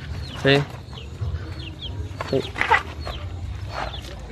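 Chickens clucking, with many short, high peeping calls from chicks and a louder burst of calls about two and a half seconds in.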